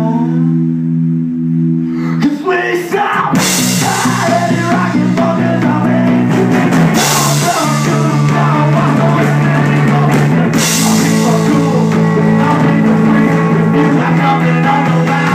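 Live rock band playing: a held chord rings for about two seconds, then the drums and full band come in with cymbals and singing over electric guitar.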